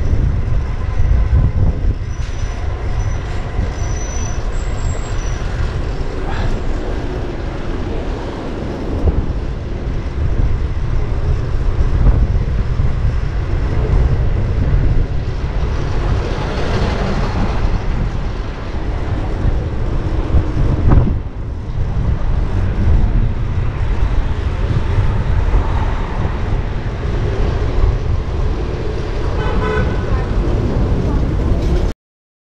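Wind rushing over a handlebar-mounted camera's microphone as a fixed-gear bicycle rides through heavy city traffic, with engines and vehicle horns around it.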